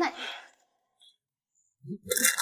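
A woman's spoken line ends in a breathy sigh-like exhale. Then there is about a second and a half of silence before a low voice starts up right at the end.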